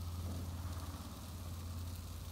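A steady low mechanical hum, like an idling engine, with a faint hiss above it.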